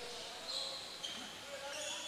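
Faint sound of a gymnasium during a stoppage in a basketball game: distant voices and a basketball bouncing on the hardwood court, with one light knock about a second in.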